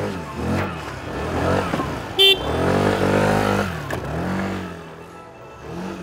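Motor scooter engines revving and passing one after another, their pitch rising and falling, with a short horn beep about two seconds in. The sound fades toward the end.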